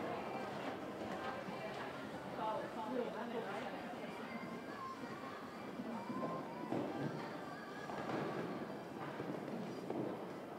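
Indistinct voices talking in the background of an indoor riding hall, with some music mixed in.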